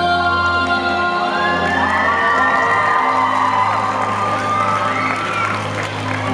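Instrumental backing track playing held chords over a steady low note, with an audience of children cheering and shouting over it from about a second and a half in.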